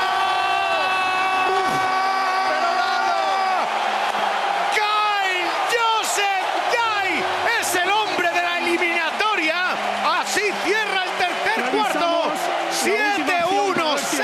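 Broadcast commentator's long, held yell of excitement at a buzzer-beating three-pointer, then rapid rising and falling shouts and whoops over an arena crowd cheering, with a few sharp bangs or claps.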